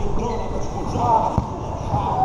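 A basketball bouncing once on a hard court about one and a half seconds in, with players' voices and movement around it.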